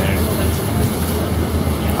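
Steady low rumble of a city bus running, heard from inside the passenger cabin.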